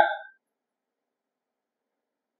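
Silence: a man's voice trails off at the very start, then nothing is heard.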